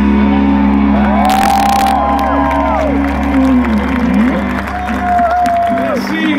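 A rock band holding a final chord at the end of a song, ringing out live through a large sound system. Crowd whoops and cheers rise over it, loudest a little after a second in.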